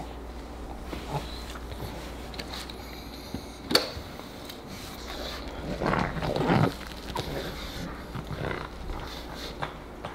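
A pug growling while it tugs at a plush toy, loudest a little before seven seconds in. A sharp click sounds about four seconds in.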